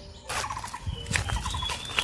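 Footsteps crunching over dried fallen leaves and longan fruit, with a bird's short rapid trills repeating several times.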